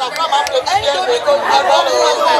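Speech: a woman talking into a handheld microphone, with other voices chattering behind.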